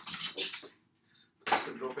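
Crackle and clatter of a sterile disposable speculum pack being torn open and the speculum dropped into a tray, mostly in the first moments, followed by near quiet with one faint tick.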